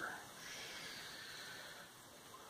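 Faint, soft rustle of a glass of water being slid across a cloth towel on a tabletop.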